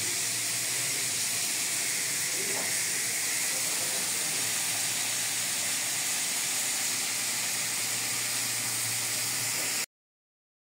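Steady hiss from a lit LPG ring burner with a pan of green vegetables frying on it. The hiss is unchanging and cuts off suddenly near the end.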